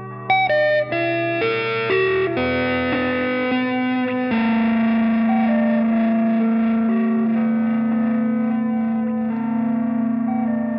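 Electric guitar played through effects: a quick rising run of picked notes, then from about four seconds in a long held chord that keeps ringing with echoing upper notes layered over it.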